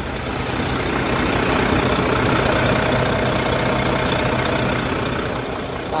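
A truck engine idling steadily, growing louder over the first few seconds and then easing off.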